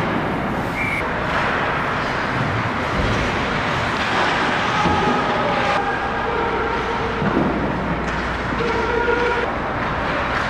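Ice hockey game sound at rink level: a steady wash of skates on ice and rink noise, with a few brief pitched calls around the middle and again near the end.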